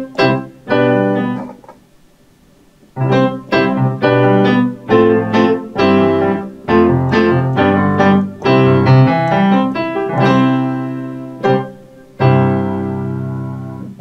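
Nord Piano 3 digital stage piano playing its Royal Grand sampled grand-piano voice: struck chords that ring and decay. A short pause comes about two seconds in, then steady playing that ends on a held chord fading out.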